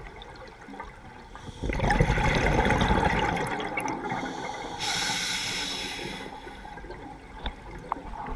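Scuba regulator breathing heard from the camera diver's own mouthpiece: a long exhalation of rumbling, gurgling bubbles starts about two seconds in, followed by a shorter hissing inhalation through the demand valve.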